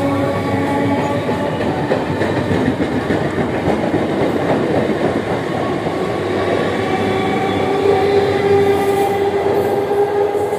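Eastern Railway electric multiple-unit local train running past on the rails, a continuous loud rumble of wheels and coaches. Over it sits a steady pitched whine, which grows stronger in the last few seconds.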